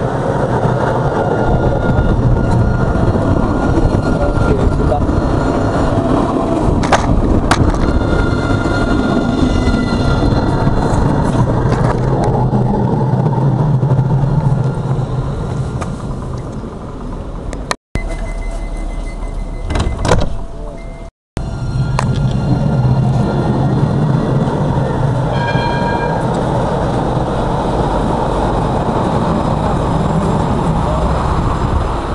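Strasbourg Alstom Citadis trams running past on street track: a steady low traction hum over rail rumble, with a few short high tones. The sound cuts off abruptly twice just before and after the middle.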